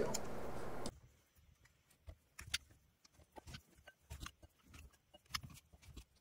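A metal spoon scraping and tapping inside a glass jar as lumps of mutton tallow are dropped into a ceramic bowl: scattered faint clicks and knocks. A steady background hiss cuts off suddenly about a second in.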